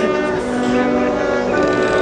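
Marching band playing, its brass holding sustained chords, with a short percussion hit at the start.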